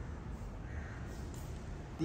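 Crows cawing faintly over a steady low background rumble.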